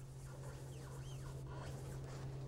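Faint rubbing of a paper towel working tung oil by hand into a wooden pen blank on a stopped lathe, with a few faint high chirps over a steady low hum.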